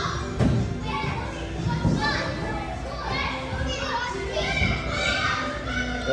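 Busy din of many children playing and calling out in a large indoor hall, with background music and a few low thumps.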